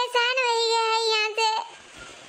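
A high-pitched, sped-up cartoon woman's voice holds one long, drawn-out vowel on a steady pitch for about a second and a half, then stops abruptly, leaving a faint hiss.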